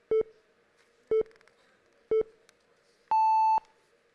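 Game-show countdown timer: three short beeps about a second apart, then one longer, higher beep marking that time is up on a word with no answer given.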